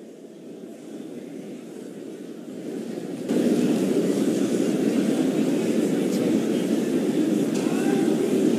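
Congregation praying aloud all at once, many voices blending into a dense, steady crowd sound that starts faint and rises sharply about three seconds in.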